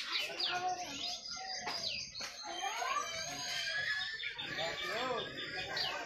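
A dense chorus of birds chirping and calling in trees, many short overlapping calls sliding up and down in pitch. About five seconds in, a few lower, arched calls repeat.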